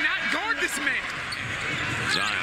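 Televised basketball game sound: arena crowd noise under a commentator's faint voice, with a basketball bouncing on the court.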